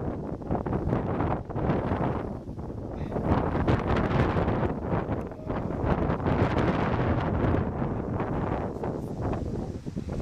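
Wind gusting over the microphone: a heavy rushing noise that rises and falls, easing briefly about two and a half seconds in and again around five and a half seconds.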